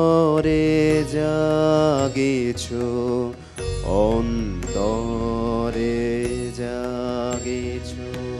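Male vocalist singing a Bengali song in long, sliding held notes, with harmonium accompaniment and a steady low drone beneath.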